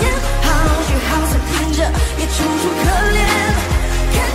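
Mandarin pop song playing: a sung melody over a steady bass line and beat.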